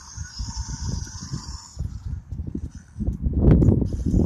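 A short electronic hissing growl from a WowWee Untamed Fingerlings stegosaurus toy's speaker, lasting just under two seconds. Wind rumbles on the microphone underneath, louder near the end.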